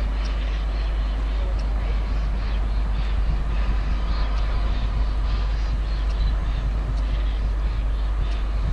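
Steam locomotive moving slowly with its train, heard from a distance as a steady noisy rumble with a deep low hum underneath.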